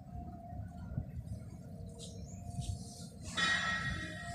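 Low outdoor background rumble with a faint steady hum. About three seconds in, a bright ringing, bell-like sound made of several tones sets in and lingers.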